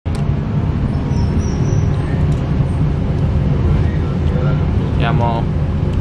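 Passenger train running, heard from inside the carriage: a steady low rumble throughout. A short burst of a man's voice comes near the end.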